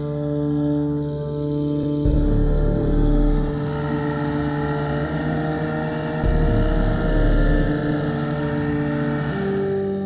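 Dark ambient / dungeon synth music: sustained synthesizer pads over a deep bass drone, the chord shifting every few seconds and the bass swelling in and out.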